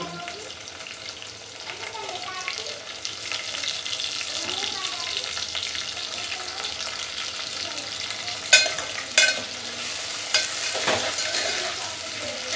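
Sliced onions and potato pieces sizzling in hot oil in a steel pot, a steady frying hiss as the onions brown and the potatoes half-cook. Near the end come a few sharp clinks and scrapes as a steel ladle stirs the pot.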